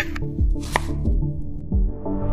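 Fresh greens being cut with kitchen scissors, with sharp cutting sounds and one clear snip about three-quarters of a second in, over background music with a steady beat.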